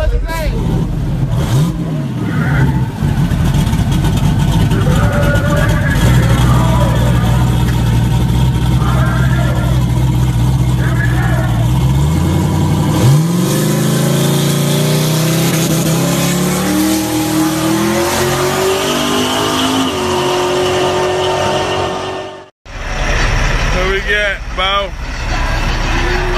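A donk's engine idles steadily, then revs sharply about halfway through as the car pulls away hard. Its pitch climbs in steps as it runs up through the gears. The sound breaks off suddenly near the end.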